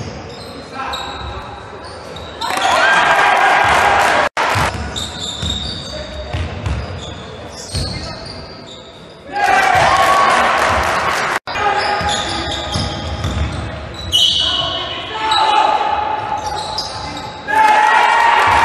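Sound of a youth basketball game in a large echoing gym: a ball bouncing on the court, with players and spectators shouting. Loud bursts of shouting and cheering come about three seconds in, around ten seconds in, and at the end, and the sound cuts out briefly twice.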